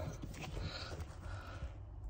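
Faint handling noise of a brass armoured-cable gland and cable being turned in the hands, with a few light clicks.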